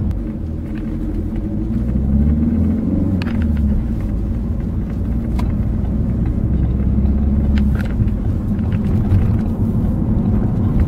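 Car engine and road rumble heard from inside the cabin while driving, the engine note rising and falling with speed.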